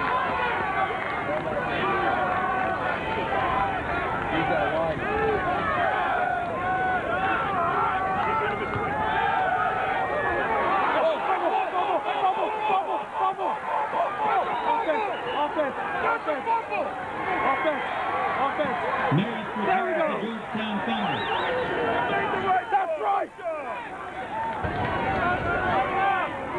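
Football crowd chattering: many voices talking at once in the stands, with no single voice clear. A nearer man's voice stands out about two-thirds of the way through, and the sound drops out for a moment near the end.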